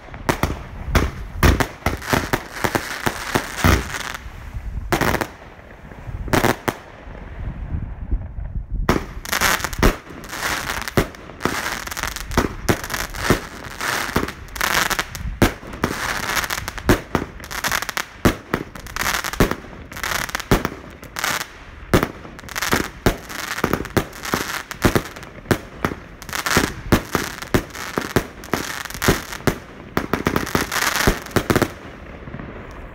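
DPA 8010 consumer firework battery (cake) firing a rapid, continuous barrage of shots that burst overhead. The barrage thins out briefly about seven seconds in, then picks up again densely.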